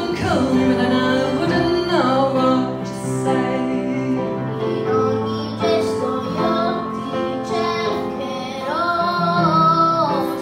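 A solo voice singing into a microphone over instrumental accompaniment, with long held notes that slide between pitches.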